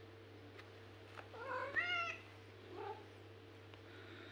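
A cat meowing twice: one longer call that rises and falls in pitch about a second and a half in, then a short one.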